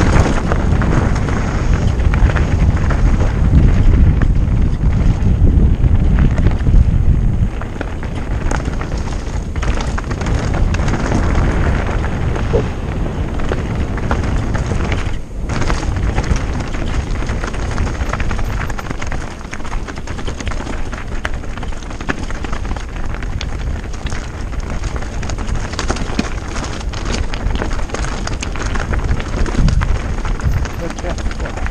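Mountain bike descending at speed over loose gravel and rock: tyres crunching on stones, with frequent rattles and knocks from the bike, under wind buffeting the microphone. The heavy wind rumble eases about seven seconds in.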